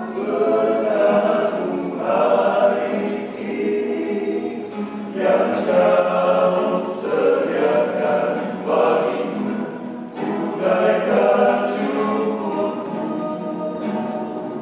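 Men's vocal group singing a slow hymn together in phrases, accompanied by an acoustic guitar.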